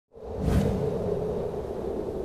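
Whoosh sound effect with a low rumble about half a second in, fading into a steady held drone.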